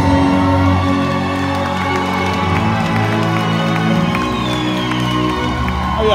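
Loud concert music over a large outdoor sound system, long held chords ringing steadily, with a crowd cheering under it as the band takes the stage.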